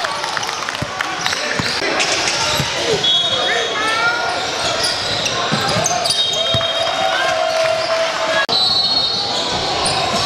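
Live gym sound of a basketball game: a basketball bouncing on the hardwood court, brief high sneaker squeaks, and spectators' voices in a large echoing hall. The sound drops out for an instant about eight and a half seconds in, at an edit cut.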